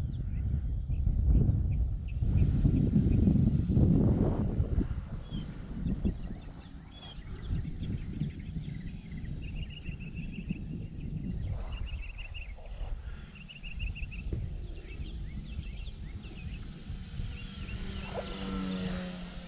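Wind buffeting the microphone in a low rumble, loudest in the first few seconds, with a bird chirping in short repeated bursts in the middle.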